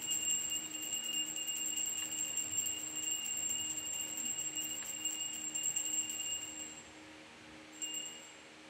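Altar bells shaken in a continuous jingling ring while the chalice is elevated at Mass. The ringing stops about seven seconds in and comes back in one short ring near the end, over faint low held tones.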